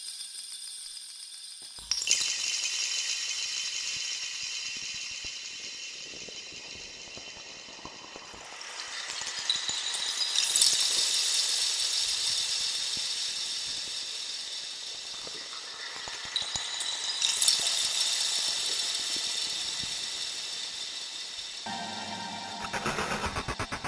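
Sampled wind chimes from Soundpaint's AGE Windchimes 'Ambient 5' preset, played from a keyboard. A dense metallic shimmer of many high chime tones enters about two seconds in, swells twice more, and fades between the swells.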